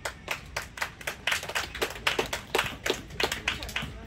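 Rhythmic hand clapping, sharp claps at about four a second, fairly even in tempo.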